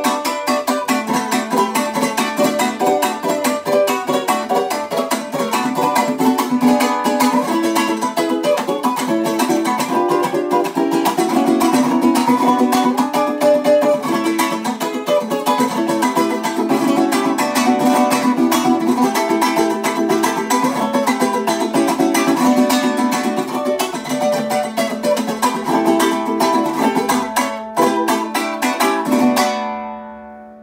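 Venezuelan cuatro played solo: a fast joropo llanero of dense strummed chords with a melody picked through them. Near the end it closes on a final chord that rings out and fades.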